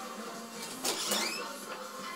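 A wooden interior door being opened about a second in: a short scraping burst ending in a brief squeak. Steady background music plays underneath.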